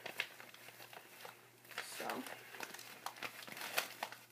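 Crumpled tissue paper crinkling and rustling in irregular short bursts as it is pushed into a fabric Christmas stocking.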